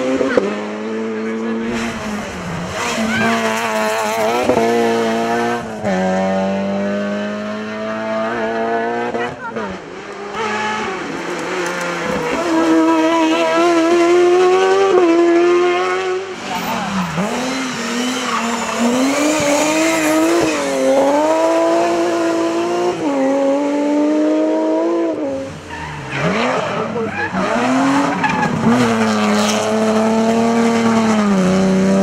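Rally cars' engines revved hard on a hillclimb, one car after another. The pitch climbs and drops back again and again with gear changes and lifts off the throttle.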